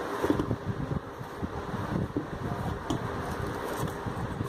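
Dough being kneaded by hand in a stainless steel bowl: irregular soft thuds and rubbing as it is pressed and turned against the steel, over a steady fan-like whir.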